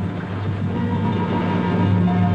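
Dramatic film score: a steady low drone of sustained notes, with higher held notes coming in near the end.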